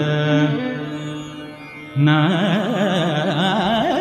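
Carnatic classical music from a live concert. A held note fades away over the first two seconds. At about halfway, a heavily ornamented melody enters suddenly, its pitch wavering up and down in quick oscillations (gamakas).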